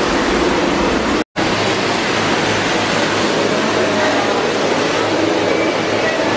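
Steady rush of flowing water, broken by a brief total silence just over a second in.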